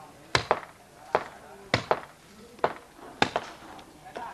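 Hand hammering on a building site: about nine sharp, ringing blows, several coming in quick pairs, spaced roughly half a second to a second apart.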